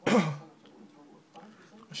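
A man clears his throat once, a short, loud burst right at the start.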